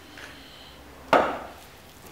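A single sharp knock about a second in, as a wooden pepper mill is set down on a cutting board.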